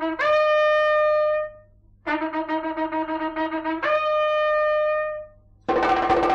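Conch shell blown twice. The first blast's held high note fades out about a second and a half in. The second blast starts on a low, fluttering tone and jumps up an octave to a held note that dies away near the end.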